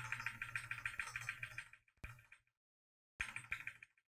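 Faint clicking of a computer keyboard as the entry on an on-screen calculator is edited: a run of rapid ticks for about two seconds, a single click about two seconds in, and a short run of ticks near the end.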